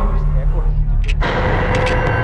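A steady low drone that gives way abruptly, a little over a second in, to a rougher low rumble with a steady hum over it.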